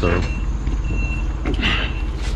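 Diesel engine of a Moffett truck-mounted forklift idling steadily while warming up. An electronic warning beeper sounds over it, three short high beeps evenly spaced.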